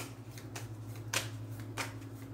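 A tarot deck being shuffled by hand, the cards riffling in short sharp strokes: one at the start, then two more about a second in and near the end. A low steady hum runs underneath.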